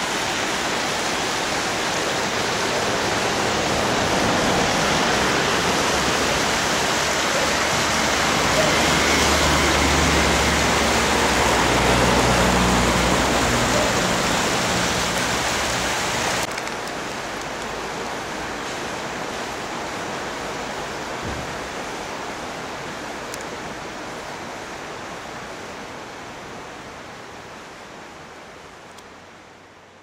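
Steady rush of flowing river water. A low hum joins in for several seconds in the middle; just past halfway the sound drops suddenly, then slowly fades away towards the end.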